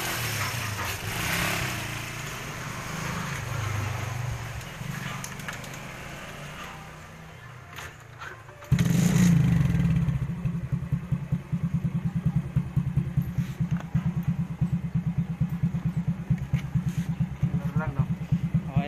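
Suzuki Raider J underbone motorcycle engine starting about nine seconds in, then idling with a rapid, even putter. Before it catches there is a quieter, uneven low sound.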